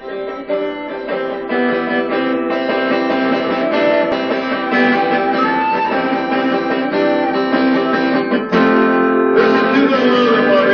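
Acoustic guitar music, played live, building up over the first second or two and dipping briefly about eight and a half seconds in. It is heard through a screen's playback speakers.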